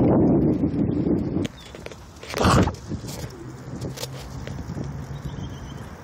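Wind rushing over the microphone and tyres rolling on asphalt during a bicycle ride. It is loud for about the first second and a half, then quieter, with one short loud rush of noise about two and a half seconds in.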